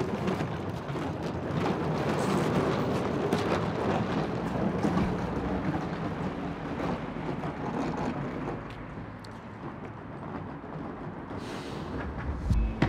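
Rolling suitcase wheels on paved ground: a steady, grainy rumble that grows quieter over the last few seconds as the luggage is wheeled away.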